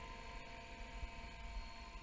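Electric 550-size radio-controlled helicopter in flight, its motor and rotors giving a faint, steady whine over a low rumble.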